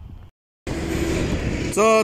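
Steady rushing outdoor noise, in the manner of wind and traffic heard from a bridge, that starts abruptly after a short dead-silent gap from an edit cut; a man's voice begins near the end.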